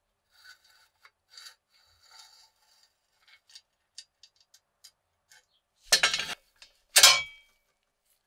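Rusty toy truck parts being handled as the wheels and axle rod come off the chassis: small scrapes and clicks, then two loud, short scraping clatters near the end, the second ending in a brief metallic ring.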